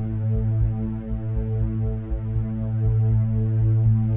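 Electronic space-synth track: a sustained, steady synthesizer drone with a pulsing low bass beneath it.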